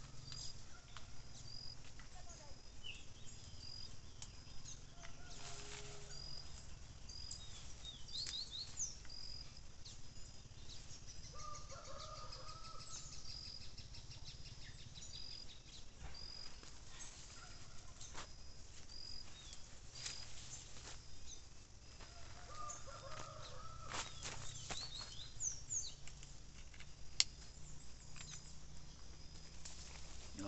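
Birds calling in the background: a short high chirp repeated again and again, and a few bouts of chicken-like clucking. There are scattered short rustles and clicks and a steady low rumble underneath.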